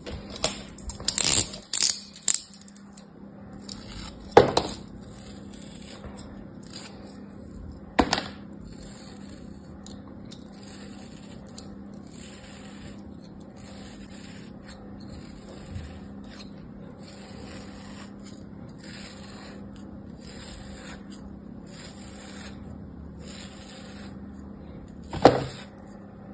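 A thin knife blade slicing again and again through a moulded block of kinetic sand, making a run of short, soft scraping strokes about once a second. There are a few sharp, louder clicks in the first couple of seconds and again about four and eight seconds in.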